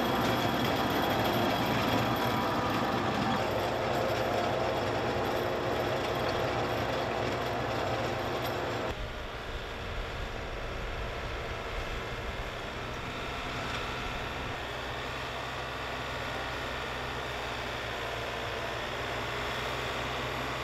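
John Deere 1025R compact tractor's three-cylinder diesel engine running steadily while working the garden soil, with a sudden change in the sound about nine seconds in.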